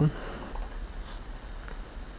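A few faint computer mouse and keyboard clicks, short sharp ticks, heard over a low steady hum from the recording setup.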